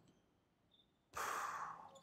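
A man sighing: one long breath out, starting suddenly about a second in and fading away over most of a second.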